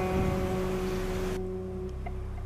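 Background music: a plucked guitar chord ringing out and slowly fading, with a low steady hum beneath.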